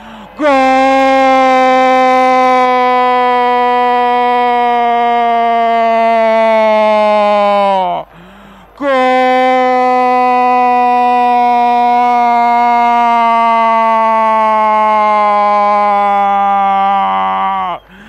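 Radio football announcer's drawn-out 'goool' shout celebrating a goal, held as two long notes of about seven and nine seconds, each sinking slowly in pitch, with a quick breath about eight seconds in.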